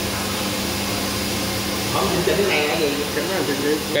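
Steady mechanical running noise with a constant low hum from a running automatic 20-litre water-bottle filling machine and its pumps.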